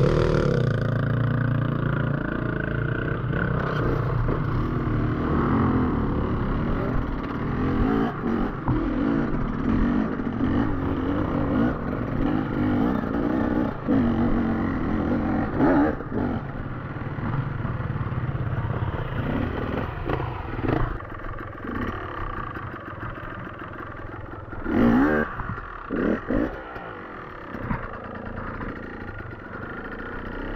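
Beta enduro dirt bike engine heard from on board, working hard through a steep muddy climb for the first two-thirds, then running quieter at lower revs, with a few short louder bursts near the end.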